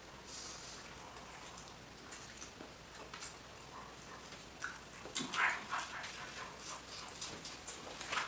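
Faint chewing and mouth sounds of people eating plantain with their fingers: soft wet smacks and small clicks, with a louder short mouth noise about five seconds in.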